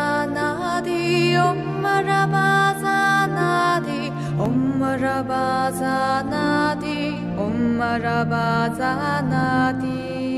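Devotional intro music with a sung Buddhist mantra: long held vocal notes that glide between pitches over sustained low tones.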